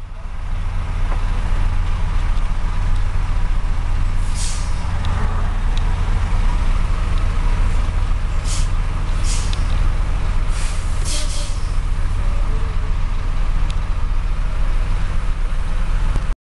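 Steady low engine rumble heard from inside a vehicle cab aboard a river ferry. Several short air hisses come between about four and eleven seconds in.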